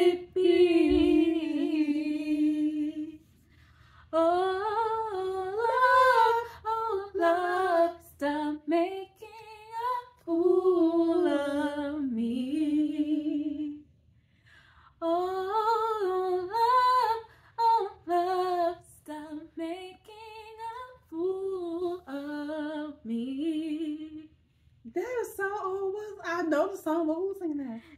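A woman singing unaccompanied, a slow melody of held and gliding notes in phrases broken by short pauses, with no clear words.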